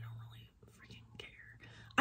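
A woman whispering faintly and breathily to herself, with no voiced words. A low steady hum cuts out about half a second in.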